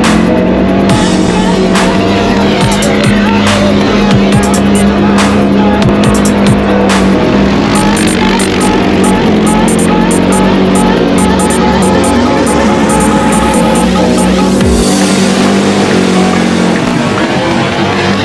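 CFMoto CForce ATV's single-cylinder engine revving and easing as the quad spins donuts on a dirt field, mixed with loud electronic background music.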